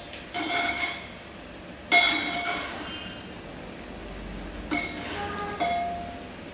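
Metal ladle clinking against the side of a metal cooking pot four times while cooked rice is turned and fluffed. Each knock leaves the pot ringing briefly.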